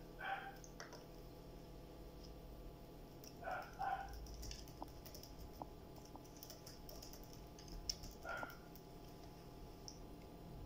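Quiet room tone: a low steady hum, a scatter of faint light clicks, and three brief faint sounds, one near the start, one a few seconds in and one near the end.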